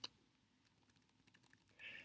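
Near silence, with a couple of faint computer keyboard key clicks near the end.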